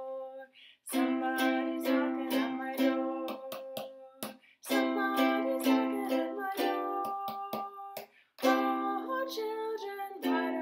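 Makala ukulele strummed in a steady rhythm of chords, in three phrases with brief pauses between them.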